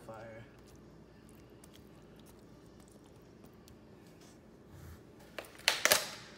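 Quiet room tone with a few faint clicks, then about five and a half seconds in a short, loud burst of clattering and rustling as a plastic tub of crumbled feta is picked up and handled.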